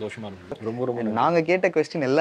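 A man's voice speaking, in an animated and rising-and-falling way, from about half a second in.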